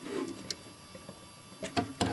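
A few light clicks of plastic Lego pieces being handled: one about half a second in and two close together near the end.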